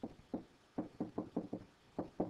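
A stylus tapping and knocking on a writing tablet while handwriting a word: a run of about eight short, light knocks, irregularly spaced.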